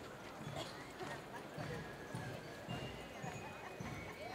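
Footsteps of a marching column on cobblestones, an even beat of about two steps a second, with voices of onlookers.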